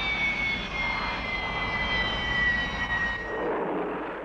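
Harrier's Rolls-Royce Pegasus jet engine whining with a rush of jet noise, the whine falling slowly and steadily in pitch as the engine runs down with the jet rolling out after a rolling vertical landing. The whine fades out near the end.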